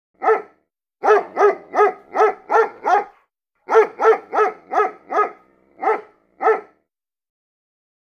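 A young puppy barking at its own reflection in a mirror: about fourteen short, high-pitched barks in quick runs, one, then six, then five, then two more spaced out, stopping well before the end.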